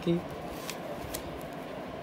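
Faint rustling of paper banknotes being handled and counted out, with a couple of soft flicks.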